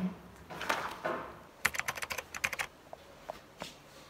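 Soft rustling, then a quick run of about ten light clicks and a few single ones: kittens' claws catching and scratching on a blanket as they play.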